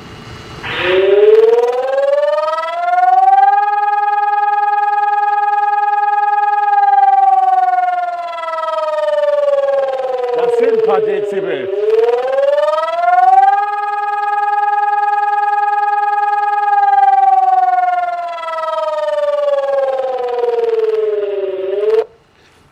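Loud electronic siren alarm played through a VOCcom MH-360-4 "Streethailer" 360° loudspeaker as a pre-programmed test alarm. The tone rises over a few seconds, holds steady, then slowly falls, and does this twice.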